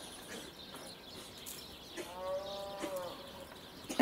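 A single animal call about a second long, about halfway through, rising slightly and falling in pitch, over faint outdoor background; a sharp knock right at the end.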